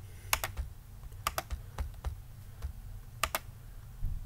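A few light, sharp clicks at irregular intervals, some in quick pairs, over a faint low background hum.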